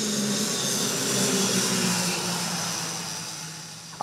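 Twin-engine turboprop airliner's engines and propellers running as it passes low over the runway: a steady rush over a low propeller drone. It swells slightly about a second in, then fades as the aircraft moves away.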